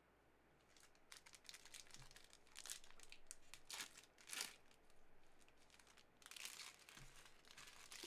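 Foil wrapper of a Panini Clearly Donruss football trading-card pack being torn open and crinkled in the hands. Faint, irregular crackling starts about a second in and is loudest around the middle.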